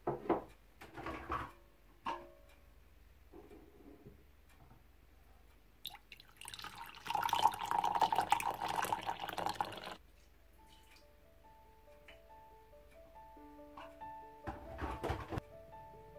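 Hot coffee poured from a coffee maker's carafe into a mug, a steady splashing pour of about three seconds in the middle. It comes after a few light clinks of kitchenware, and soft piano background music comes in during the second half.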